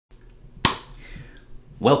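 A single sharp snap about two thirds of a second in, ringing briefly in a small room. A man starts to speak near the end.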